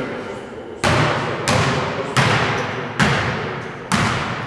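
Basketball dribbled on a hardwood gym floor: five bounces about two-thirds of a second apart, each a sharp thud with a short echo in the hall.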